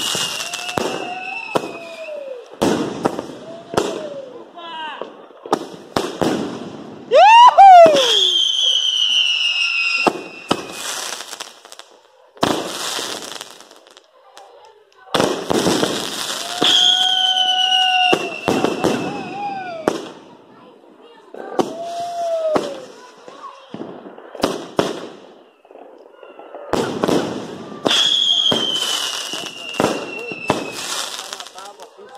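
A fireworks battery (multi-shot cake) firing in volleys: rapid bangs and crackling bursts, with shells whistling as they go up, the whistles sliding down in pitch over two or three seconds. The loudest burst comes about a quarter of the way in, with short lulls between volleys.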